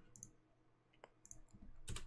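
Near silence with a few faint, scattered clicks of a computer mouse or keyboard.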